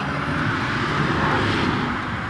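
Steady rushing noise of a vehicle passing by, swelling a little towards the middle.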